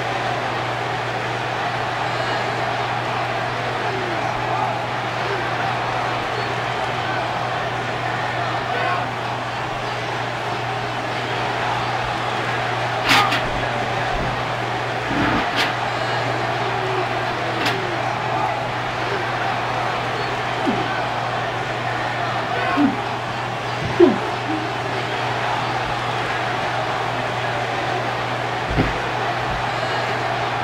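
Steady background hiss with a constant low hum. It is broken by a few sharp clicks about halfway through and short knocks later on.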